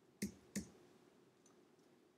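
Two computer mouse clicks about a third of a second apart, made while selecting lines in CAD software.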